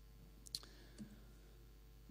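Near silence with two faint clicks, about half a second and a second in, from a laptop's keys or touchpad being pressed.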